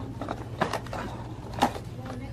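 Paper seed packets being handled and pulled from a display rack: a few short crackles, the loudest near the end, over a steady low hum.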